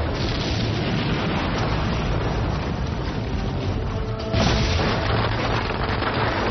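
Low rumble of an imploded building collapsing, mixed with dramatic background music. The sound jumps sharply louder about four seconds in.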